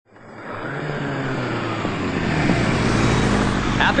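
Motorcycle engines running as two bikes ride toward the listener, the sound growing louder. A man shouts "Holi" just at the end.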